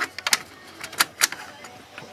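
A cassette tape being handled and fitted into the open cassette deck of a Sanyo M9935K boombox: a few sharp plastic clicks and knocks spread through the moment.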